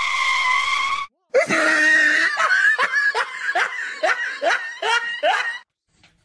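A high-pitched voice: a held shriek of about a second, then, after a brief gap, a run of about nine short cries, each falling in pitch.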